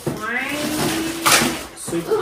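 People's voices: an untranscribed exclamation that rises in pitch, then a held vowel, with a short sharp hiss of noise about a second in.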